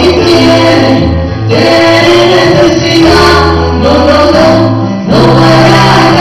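Two women singing live into microphones over an electric keyboard. Held bass chords change about once a second, and the recording is very loud.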